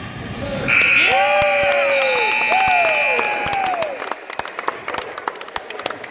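A referee's whistle blows one steady, long blast starting just under a second in, over shouting voices on a basketball court. A basketball bouncing and sharp knocks on the hardwood floor fill the last couple of seconds.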